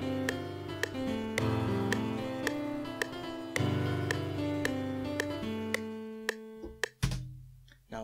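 A software instrument is played live from a USB MIDI keyboard into FL Studio and heard over room speakers: chords over a moving bass line, with a steady click about twice a second. The playing dies away about six and a half seconds in, and a low thump follows near the end.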